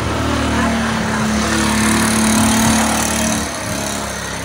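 A motor vehicle's engine running close by on the street, growing louder toward the middle and falling away near the end as it passes.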